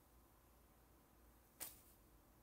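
Near silence: room tone, with one brief soft noise about one and a half seconds in.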